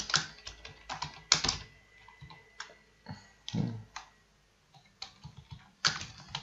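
Typing on a computer keyboard: irregular keystroke clicks, with a short pause a little past the middle.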